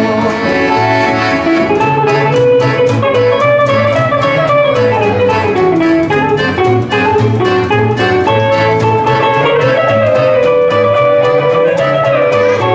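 Live acoustic swing band playing an instrumental passage: upright double bass walking underneath, acoustic guitars strummed on a steady beat, and an accordion carrying the melody.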